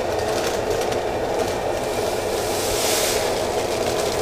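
Malted grain poured from a paper bag into a plastic bucket, a steady rattling rush that holds unbroken.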